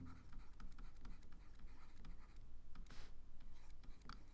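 Stylus writing on a digital drawing tablet: faint, quick scratchy strokes and small ticks as words are written out by hand.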